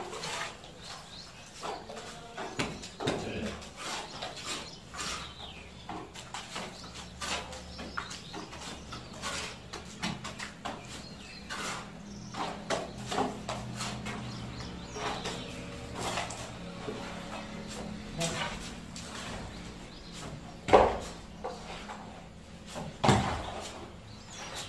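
Hand plastering of a concrete block wall: wet cement mortar slapped onto the wall from a pan, with irregular knocks and scrapes as the pan is refilled from the mortar pile. A low steady hum runs in the background through the middle of the stretch, and a single sharp knock near the end is the loudest sound.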